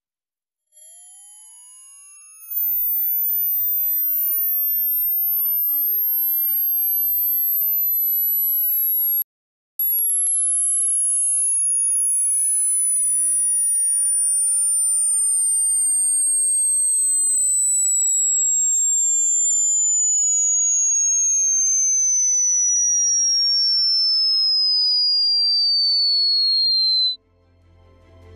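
Hearing-test sine tone: a single pure tone that starts at the very top of the hearing range and glides slowly and steadily down in pitch to a high whistle, so the listener can note where it first becomes audible. It comes in faint, turns loud about two seconds in, drops out for a moment about nine seconds in, and cuts off just before the end.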